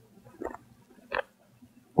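Two brief soft rustles of sewing thread being drawn through cotton fabric during hand stitching, the second louder, about half a second apart.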